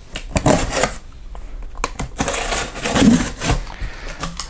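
A large cardboard shipping box being dragged across a desk and handled: two stretches of scraping with sharp knocks and taps between them.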